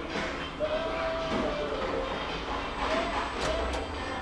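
Schindler 2400 machine-room-less traction lift car travelling in its shaft, with a steady low rumble. A high thin whine rises and holds for about a second, and comes back twice briefly near the end.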